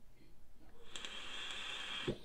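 Vape hit on a Digiflavor Mesh Pro mesh-coil dripping atomizer: air drawn through the opened airflow over the firing coil, a steady hiss that starts about a second in.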